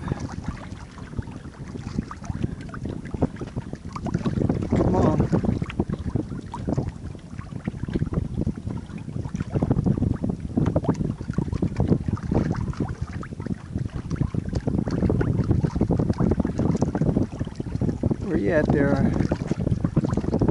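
Gusty wind buffeting the microphone, a rough low rumble that rises and falls throughout, with a brief voice near the end.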